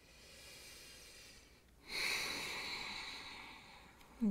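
A woman's breathing as she catches her breath after exertion: a faint breath, then a louder, airy breath about two seconds in that slowly fades.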